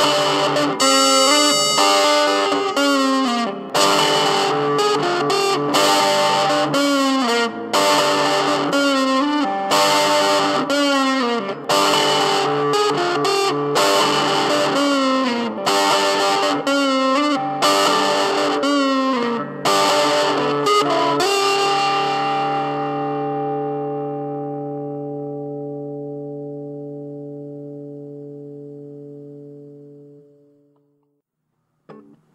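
Distorted electric guitar played through effects, with sliding, bent notes. About two-thirds of the way through the playing stops on a final chord that rings on and fades away.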